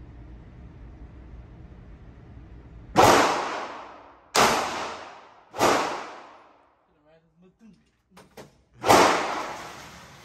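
Taurus pistol firing in an indoor range lane: three shots about a second and a half apart starting about three seconds in, then a fourth near the end, each followed by a long echo off the concrete walls.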